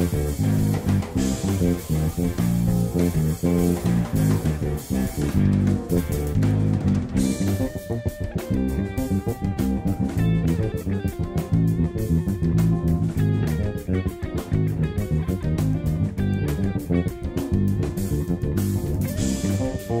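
Fender Jazz Bass played fingerstyle in fast, busy jazz-fusion lines, recorded direct through amp-modelling software, over a backing track with a drum kit that grows more prominent about seven seconds in.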